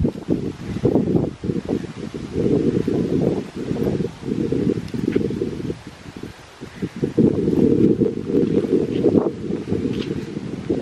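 Wind buffeting the camera microphone in uneven gusts, a loud low rumble that surges and drops every second or two.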